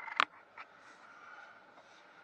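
A single sharp click inside a vehicle's cabin about a fifth of a second in, then a faint steady hum.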